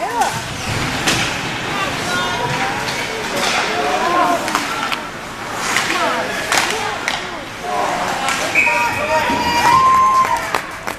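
Ice hockey rink sounds: spectators' voices shouting and calling out over the play, with sharp clacks of sticks, puck and boards scattered through. A louder held shout comes near the end.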